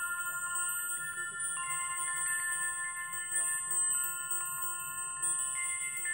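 Chimes ringing: many overlapping notes at several pitches, a new one struck every second or so, each ringing on for several seconds.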